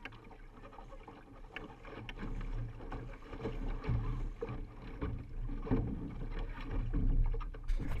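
Water rushing and splashing along the hull of a Laser sailing dinghy under way, over a steady low rumble, getting louder after the first couple of seconds. A few sharp knocks come near the end.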